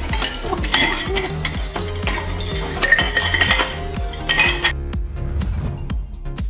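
Plates, glasses and cutlery clinking and clattering as a restaurant table is cleared at speed, over background music. The clatter stops near the end, leaving only the music.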